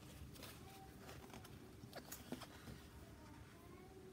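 Near silence, with faint scattered rustles and soft ticks of a paperback picture book being handled and its pages turned.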